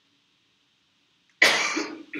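A person coughing: one loud cough about a second and a half in.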